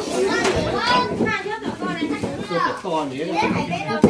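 People talking, with a young child's high voice among them.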